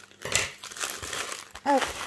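Crinkling and rustling of cut-open packaging, a white mailer envelope and a plastic bag, as the contents are pulled out by hand, with a sharper rustle about a third of a second in. A short spoken 'ah' comes near the end.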